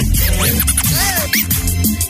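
Hip hop beat with turntable scratching: quick rising and falling scratch strokes over a steady bass line.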